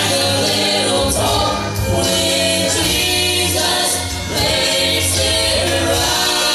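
Mixed gospel quartet of two men and two women singing in harmony into microphones, holding long chords that change every second or two.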